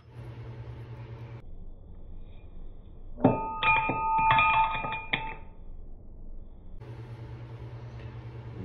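Several metal clinks over about two seconds in the middle, each leaving a clear ringing tone, as aluminum lure mold parts knock together. A low steady hum runs under the first second and a half.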